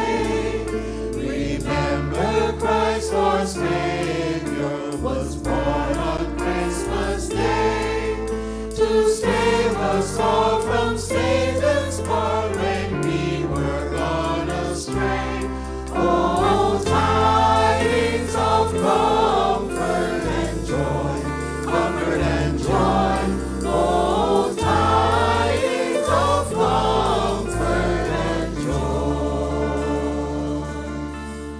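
Choir singing through microphones in a gospel style, over sustained low bass notes that change every second or two.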